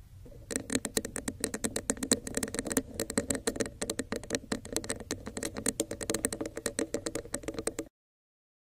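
Long acrylic fingernails tapping rapidly on a textured cup, a fast, uneven run of crisp clicks. It starts about half a second in and cuts off just before the end.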